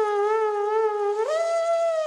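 A trombone playing alone, unaccompanied: a held note with a gentle vibrato, then a smooth slide up to a higher note about a second and a quarter in, held steady.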